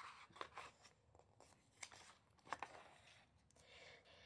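Faint rustle and crinkle of a picture book's paper page being turned by hand, with a few sharper crackles partway through.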